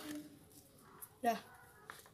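Mostly speech: the tail of a spoken question at the start and a short spoken reply, "ya", a little after a second in, with quiet room tone between.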